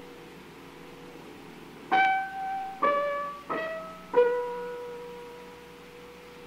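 Solo piano playing four single notes a little under a second apart, each struck and left to ring away, the last and lowest one held on. This is a violin caprice rendered by the composer at the piano.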